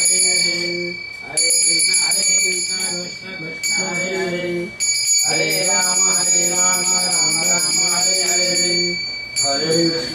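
A puja hand bell rung rapidly and continuously in two long spells, with a short pause between them. People chanting a devotional chant in held notes under it.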